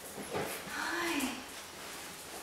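A small dog whimpering: one short whine that rises and falls in pitch, lasting about half a second, a second into the clip.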